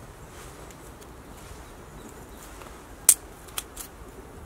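A small kindling fire of wood shavings and thin split sticks crackling, with three sharp pops near the end, the first the loudest.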